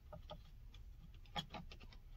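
Light clicks and taps of stacked plastic Camco FasTen XL leveling blocks being handled, with a sharper click about one and a half seconds in.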